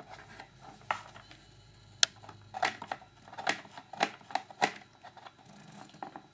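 Light clicks, taps and scratches of plastic model parts being handled and marked with a pencil: a few single clicks early, then several short clicks a second from about two and a half seconds in.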